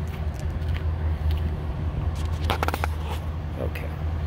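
Chevrolet Silverado pickup's engine idling with a steady low rumble, the engine running smoothly without odd noises. About two and a half seconds in, a short run of crunching clicks from footsteps on gravel.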